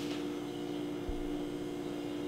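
Steady machine hum with two held tones close together in pitch.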